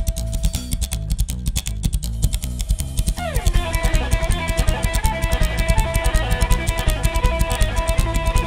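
Live band playing an instrumental passage: a slapped upright double bass and a drum kit keep a fast, clicking beat. About three seconds in an electric guitar enters with a steep downward slide and carries on with held lead notes.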